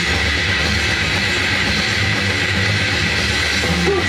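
Grindcore band playing a loud, dense instrumental passage on heavily distorted guitar, bass and drums, in a rough rehearsal-room recording.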